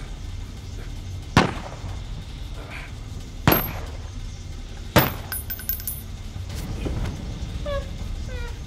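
Three sharp impact hits about two seconds apart, each ringing out briefly, over a low rumbling drone of film score or ambience. Near the end, short, muffled, gagged whimpering cries begin.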